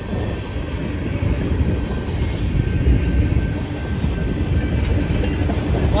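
Empty freight tank cars rolling past at low speed, their steel wheels giving a steady rumble and clickety-clack over the rail joints.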